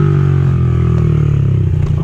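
Small dirt bike's engine running, its pitch slowly falling as the revs drop, turning into a choppy low putter near the end.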